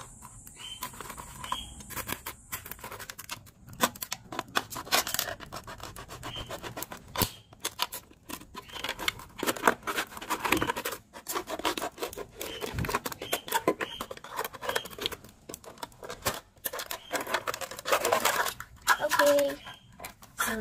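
Utility knife blade sawing through a thin plastic water bottle: an irregular run of scratchy clicks and crinkles as the plastic is cut and flexed.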